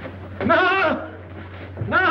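A man's voice making two quavering, bleat-like cries with a wavering pitch, each about half a second long, the second near the end.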